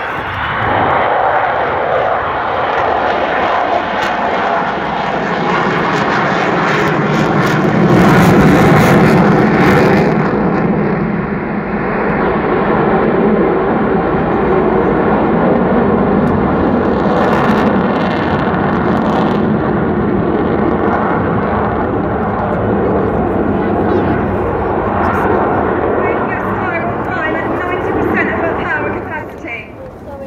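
Avro Vulcan XH558's four Rolls-Royce Olympus turbojets in a loud fly-past with the Vulcan howl. The noise builds, is loudest about eight to ten seconds in, stays loud, then falls away sharply near the end.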